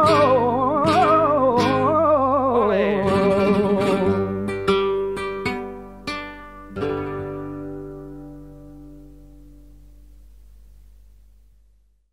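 Male flamenco singer holding a wavering final note over flamenco guitar. The voice stops about three seconds in, and the guitar closes the fandango with a few strums and a last chord that rings and fades out.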